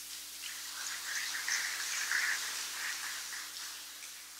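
Audience applause that builds about a second in and dies away near the end.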